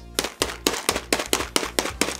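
Hands rapidly slapping a bag of coffee beans, about eight quick slaps a second.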